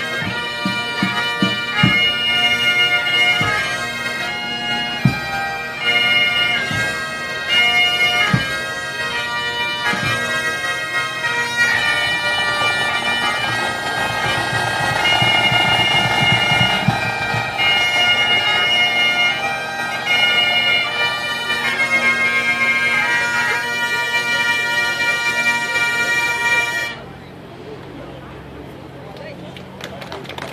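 Pipe band playing a slow air: Highland bagpipes carrying a melody over their steady drones, with single bass-drum strokes at first and a swelling drum roll in the middle. The pipes and drums stop together about a second before the end.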